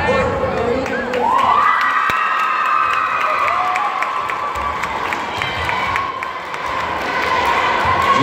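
Crowd cheering and shouting in a large hall, with loud, high-pitched cheers rising about a second in and held for several seconds as a dance routine ends.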